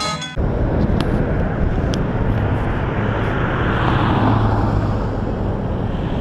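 Roadside traffic noise with a low rumble; a car passes, swelling and fading around the middle, with two brief clicks early on. Music cuts off just under half a second in.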